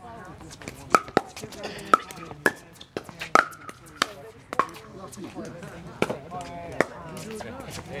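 Pickleball rally: paddles striking a plastic pickleball back and forth, a sharp, hollow pock roughly every half second to second, stopping shortly before the end.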